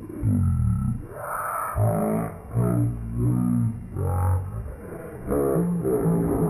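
Slowed-down human voices: a run of about six deep, drawn-out groans and cries, some sliding downward in pitch, as in slow-motion replay audio.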